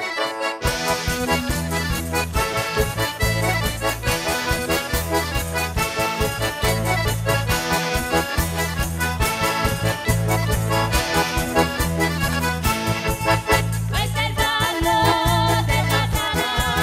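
Live folk band playing a traditional dance tune led by a diatonic button accordion. About half a second in, bass and drums come in under the accordion with a steady beat.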